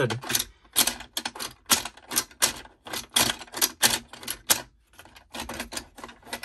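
Sharp plastic clicks and clatter from a Mack Hauler toy playset and a die-cast Lightning McQueen as they are handled and set in place. The clicks come in an irregular run, two or three a second, with a brief pause about five seconds in.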